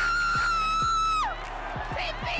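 A person's long shrill scream of celebration, held on one high pitch and then dropping off and breaking about two-thirds of the way through. Steady low thumps sound underneath, about three a second.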